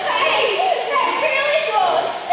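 Many children's voices chattering and calling out at once, overlapping so that no single voice stands out.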